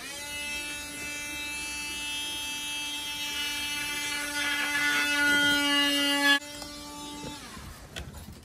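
An electric power tool running with a steady high whine, growing louder toward the end. It drops off sharply about six seconds in and then winds down in pitch over the next second.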